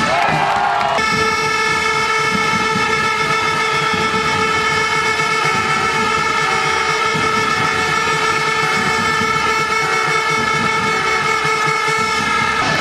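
A loud chord of several steady, horn-like tones starts abruptly about a second in and holds unbroken to the end, over the noise of an arena crowd.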